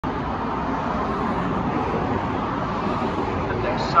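Steady road traffic noise: cars and trucks passing on a busy multi-lane road, an even rushing hum. Near the end a station loudspeaker announcement begins.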